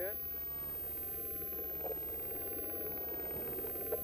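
A steady, unchanging motor-like hum with hiss, with no distinct events in it.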